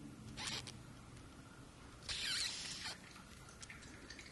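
Pet raccoon making two short, high-pitched squeaky sounds: a brief one about half a second in, and a louder, longer one about two seconds in.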